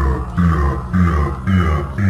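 Psytrance playing loud over a club sound system: a steady four-on-the-floor kick drum at about two beats a second, a rolling bassline under it, and a gritty synth pattern repeating over each beat.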